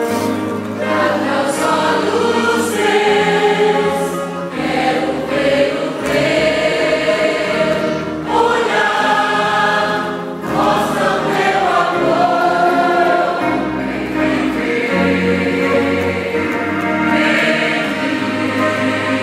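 Large mixed choir of women and men singing a gospel hymn in full voice, over a low bass accompaniment.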